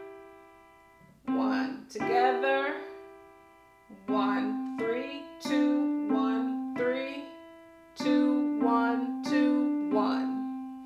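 Williams digital piano playing a slow right-hand melody in C position: single notes and a two-note chord, struck about a second apart, each ringing and fading before the next.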